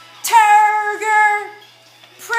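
A high voice singing two held notes, the phrase ending about a second and a half in.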